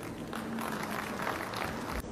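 Audience applauding steadily, with a faint low hum beneath.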